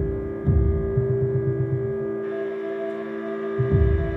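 Cello bowing low notes over a sustained drone of steady held tones. The low notes come in twice, about half a second in and near the end.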